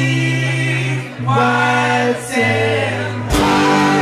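Live band playing, several voices singing long held notes in harmony over a steady bass note, with short breaks between phrases; the rest of the band comes in loudly with a beat a little before the end.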